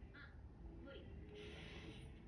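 Faint dialogue from the anime episode playing at low volume, with a couple of short raspy higher-pitched bursts of voice.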